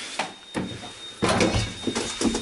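Small passenger lift: two sharp knocks, then a louder rumbling clatter from about a second in, over a faint steady high whine.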